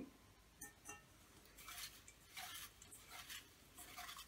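Faint, intermittent rustling of folded paper name slips being stirred by hand in a towel-covered bowl.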